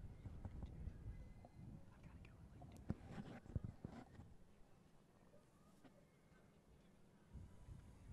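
Near silence: a faint low outdoor rumble with a few short clicks about three seconds in.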